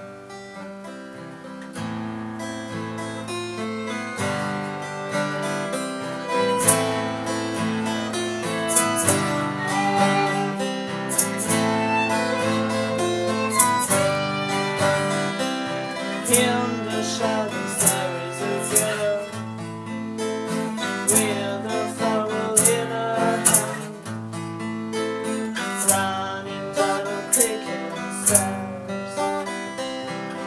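Instrumental intro of an acoustic song: a steel-string acoustic guitar strummed in a steady rhythm, with a violin playing a folk-style melody over it. It gets louder about two seconds in, and the strums sharpen from about six seconds in.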